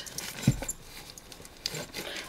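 Handling sounds of a zipped pouch being fitted around a Bible: a dull thump about half a second in, then a few light clicks near the end.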